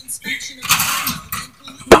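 Rustling and handling noise at a birdcage as the bird is put in, ending in one sharp click just before the end as the cage door shuts.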